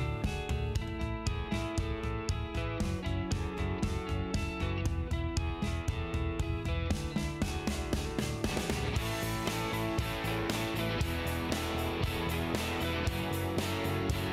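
Background music with guitar and a steady beat, growing fuller about two-thirds of the way through.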